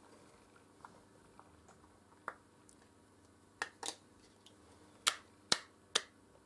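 Light plastic clicks and taps as a small bottle of eyelash glue is handled and pushed against a white plastic false-eyelash storage case to try to fit it inside. About nine short, scattered clicks, the sharpest few near the end.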